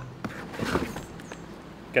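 Packaging and parts being handled as a coiled suction hose is taken out of its box: a brief rustle about half a second in, with a few light knocks.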